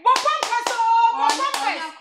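A woman's loud voice with a drawn-out held sound about a second in, punctuated by several sharp hand claps.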